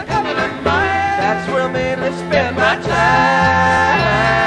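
Live rock band playing an up-tempo, country-flavoured song between sung lines: electric guitars over a bass line that steps from note to note, with drums.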